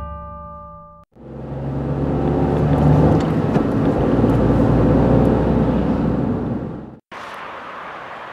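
A car driving, with steady engine and road noise, fades in about a second in, runs for about six seconds and fades out. Before it, the last ring of a musical chord dies away.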